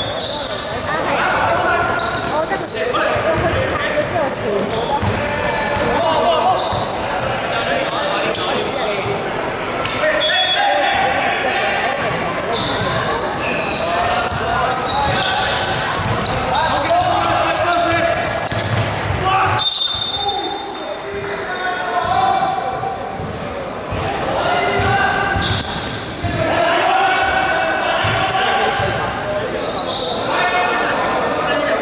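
Indoor basketball game echoing in a large sports hall: the ball bouncing on the hardwood court and players calling out to each other throughout, with a few brief high squeaks.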